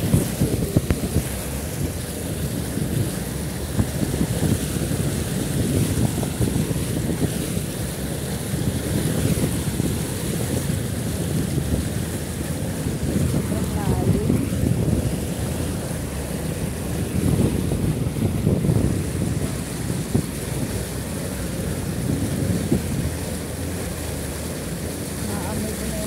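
Floodwater surging and splashing along the side of a vehicle as it drives through a flooded street: a continuous churning rush of water with a low rumble, rising and falling with the bow wave.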